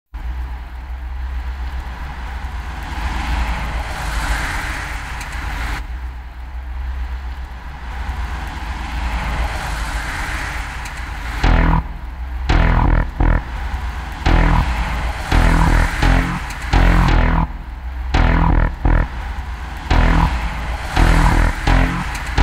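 Instrumental intro of an underground hip hop track: a steady deep bass drone under slowly swelling, hissing sweeps, then about halfway in a heavy bass-and-drum beat starts in stuttering, chopped bursts.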